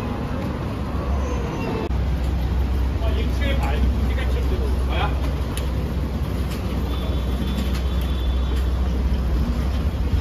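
City street traffic with a vehicle engine running close by: a steady low rumble that swells about two seconds in and holds, with passers-by talking over it.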